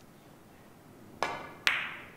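Carom billiards shot: a sharp click of the cue tip striking the cue ball, then about half a second later a slightly louder, ringing click of the cue ball hitting the red ball.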